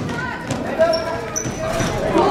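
A basketball bouncing on a hardwood gym floor, a few sharp thuds, with short high sneaker squeaks and spectators' voices in the background.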